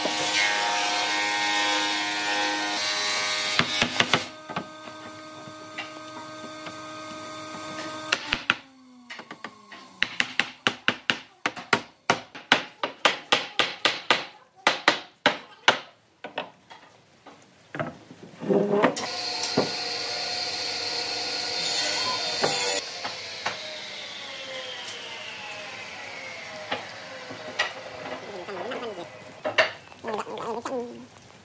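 Hammer knocking a glued wooden cradle frame together, a quick run of sharp strikes at about four a second for several seconds in the middle, driving the joints home. Steady tones at several pitches sound before and after the knocking.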